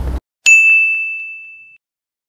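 A single bright ding, an edited-in chime sound effect, struck about half a second in and ringing out for over a second before fading away. The sound before it cuts off abruptly to silence.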